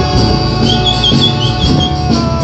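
A Torres Strait Islander choir singing a language hymn, holding sustained chords. From a little under a second in until near the end, a high wavering trill sounds over the voices.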